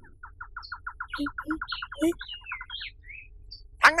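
A bird trilling: a fast run of about twenty short, even notes, roughly seven a second, with a few higher chirps mixed in.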